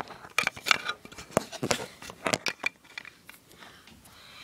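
Hands handling small hard objects: a quick run of light clicks and taps that thins out after about three seconds.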